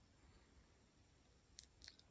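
Near silence: room tone, with two faint clicks near the end.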